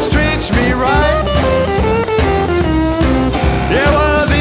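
Rockabilly band recording playing: a lead electric guitar line of bending, sliding notes over bass and drums.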